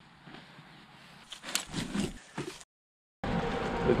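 Camouflage hunting clothing being handled, giving a few sharp rustles and crinkles about a second and a half to two and a half seconds in, then a brief dead silence.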